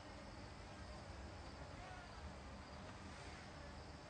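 Faint buzzing of flying insects around the microphone, a thin wavering drone over a low steady hiss.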